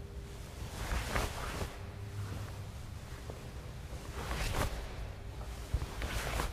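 Karate uniform fabric swishing with quick arm and body movements through a check and a block, twice, about a second in and again past four seconds, over a low steady room rumble.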